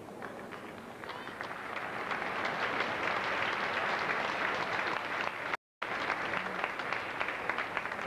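Audience applauding in a large arena, swelling about a second in, with the sound cutting out completely for a moment about five and a half seconds in.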